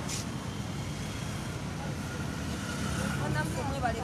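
Steady low rumble of road traffic or a running vehicle, with a sharp click near the start and faint voices coming in during the second half.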